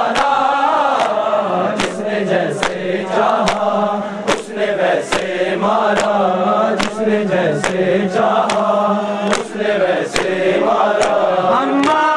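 Male mourners chanting a noha (Shia mourning lament) in unison, with rhythmic chest-beating (matam): a sharp hand slap on the chest roughly once a second, in time with the chant.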